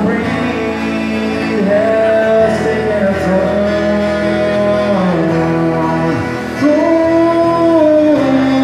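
Live acoustic guitar with a man singing slow, long held notes over it.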